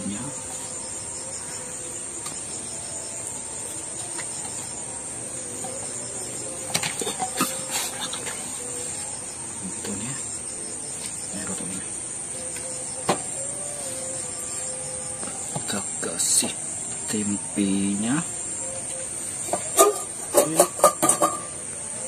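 Steady high-pitched chorus of crickets, with scattered light clicks and taps as hands lay fried tofu and tempeh on a banana leaf. A few brief voice sounds come in the second half.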